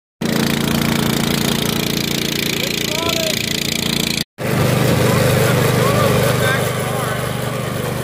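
Small engine on a homemade paddle-wheel boat running steadily at a constant speed, with a brief cut-out just after four seconds in.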